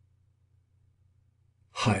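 Near silence with a faint low room hum, then a man's voice starts near the end with a greeting.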